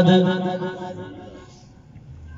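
A man's voice through a microphone and loudspeaker, holding one long chanted note at the close of a phrase of a religious address. It fades away over the first second and a half, leaving quiet.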